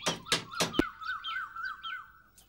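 Birds chirping and calling, with several sharp percussive strikes in the first second.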